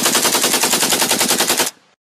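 Rapid automatic-gunfire sound effect, a fast even rattle of about ten shots a second that cuts off suddenly shortly before the end.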